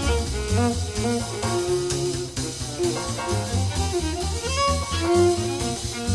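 Swing jazz from a band with violin and horns playing the melody over a walking double bass.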